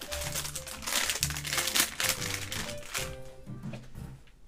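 Plastic packaging crinkling and rustling as small merchandise items are handled, over steady background music.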